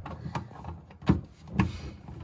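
A few sharp clicks and knocks as an HDMI cable plug is pushed into a small Roku streaming device and the device is handled against a wooden shelf, the loudest about a second in and another half a second later.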